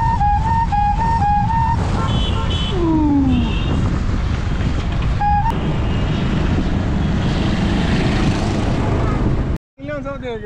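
Wind rushing over the microphone while riding a bicycle through road traffic with motorcycles passing, a loud steady rumble. A flute tune plays for the first two seconds and once more briefly about five seconds in, and the sound cuts off suddenly near the end.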